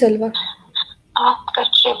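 Speech coming over a phone-call line in short, broken pieces, the words unclear.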